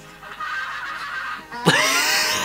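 Quieter pitched sound from the playing video clip, then, from about three quarters of the way in, a loud burst of a young man's hearty laughter.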